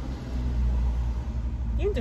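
Steady low rumble of a parked car's idling engine, heard inside the cabin. A voice starts speaking near the end.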